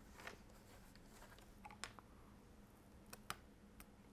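Near silence with a handful of faint, sharp clicks: a plastic spudger prying at a tiny antenna cable connector on a Samsung Galaxy S4's motherboard, a connector that is really tough to get off.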